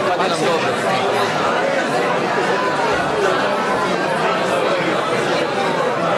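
Many people talking in pairs at the same time, a steady overlapping chatter of voices in a hall with no single voice standing out.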